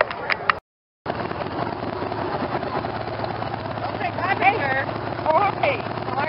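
Cruiser motorcycle's V-twin engine idling steadily, with people talking over it.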